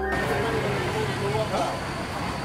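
Busy city street ambience: car traffic with many people talking at once.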